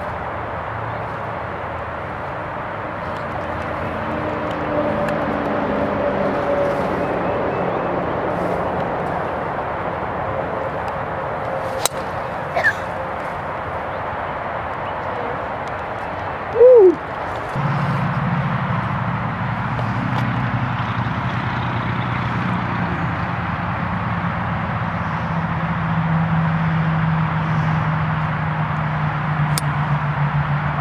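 Steady outdoor background noise with a low hum. About 12 seconds in comes the single sharp click of a golf club striking the ball off the tee. Near 17 seconds there is a brief, very loud falling call of unclear source, and the low hum grows louder from then on.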